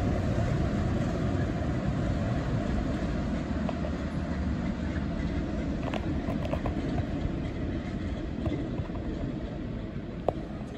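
A locomotive-hauled train pulling away, its low rumble fading steadily as it moves off into the distance, with a few faint clicks midway through.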